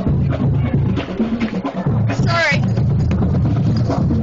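A high school marching band playing, with drums under sustained low tones, while crowd voices mix in; a high-pitched voice calls out about two seconds in.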